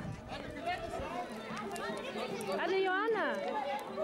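A crowd of people talking and calling out over one another, with one high voice gliding up and down in a shout or squeal about three seconds in.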